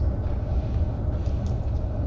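A steady low rumble of room noise, with an even low hum underneath.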